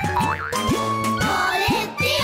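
Bouncy children's cartoon music with a springy boing-like effect rising in pitch about twice a second, joined in the second half by a warbling, bubbly sound effect.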